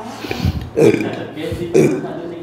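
A man's short, throaty non-word vocal sounds, two of them about a second apart.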